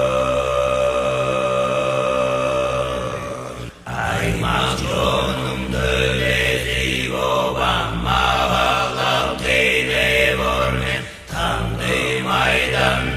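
Music of low chanting over a drone: a steady held chord for the first few seconds, then after a short drop in level a busier, shifting texture, with another short drop near the end.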